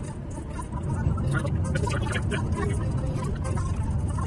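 Car cabin noise while driving on a rain-wet road: a steady low rumble of engine and tyres that grows louder about a second in.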